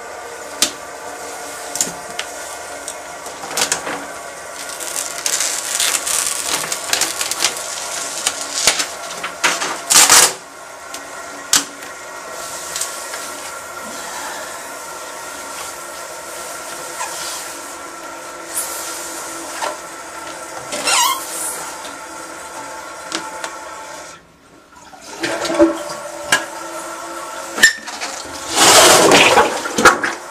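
Toilet flushing: water rushing and gurgling through the bowl and cistern, with faint steady tones under the noise and scattered splashes. It drops out briefly about three-quarters of the way through, then comes back as a loud gush near the end.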